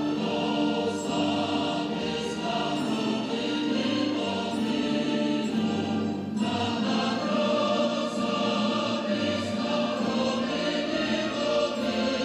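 A choir singing a slow, solemn piece in a large hall, with a short pause between phrases about six seconds in.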